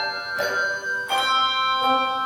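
A handbell choir ringing a slow piece: three chords struck in turn about two-thirds of a second apart, each one ringing on under the next.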